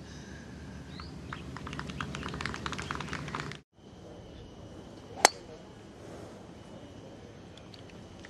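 Scattered clapping from golf spectators over a low crowd murmur. A cut follows, then a single sharp crack of a driver striking a golf ball off the tee about five seconds in, over quiet outdoor ambience with a faint steady high tone.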